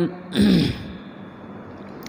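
A man clears his throat once, briefly, about half a second in. A pause with only a faint steady hum follows.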